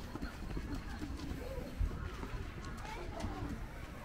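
A dove cooing, with people's voices in the background and a steady low rumble.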